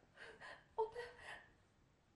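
A few short, breathy vocal sounds from a person in the first second and a half, then quiet.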